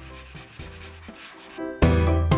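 Felt-tip marker rubbing on paper as it fills in gaps, under faint background music that gets loud near the end.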